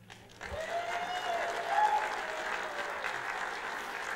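Audience applause that breaks out about half a second in and holds steady, with one drawn-out cheer rising over it in the first couple of seconds.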